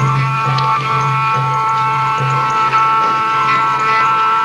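Upper Egyptian Saidi folk dance music: a melody of held high tones over a steady low pulsing beat.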